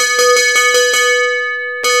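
A bell struck rapidly, about five strikes a second, stopping about a second in and ringing on; a single further strike near the end rings out.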